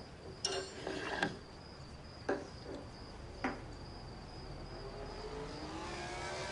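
Crickets trilling steadily in the background, with a couple of soft knocks like cutlery on plates.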